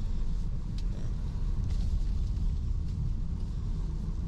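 Steady low rumble of a car driving on a dirt road, heard from inside the cabin: engine and tyre noise, with a couple of faint knocks from the car body.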